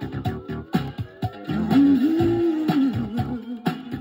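Funk and R&B 45 rpm vinyl single playing on a turntable: an instrumental passage with a steady beat of sharp drum hits, guitar and a moving bass line, with a held, bending low note around the middle.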